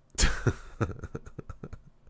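A person laughing: a sudden loud burst of breath, then a run of quick short pulses of laughter that fade away.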